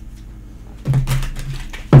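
Tarot cards handled and shuffled, a few faint soft ticks, then a woman humming a low 'mm' for about a second.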